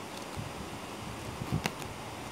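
Pokémon trading cards being flicked through by hand, a few soft clicks and one sharper snap about one and a half seconds in, over a steady background hiss.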